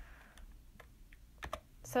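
A handful of faint, separate clicks from computer keys being pressed, the loudest about one and a half seconds in, as the slide is advanced. A voice says "So" near the end.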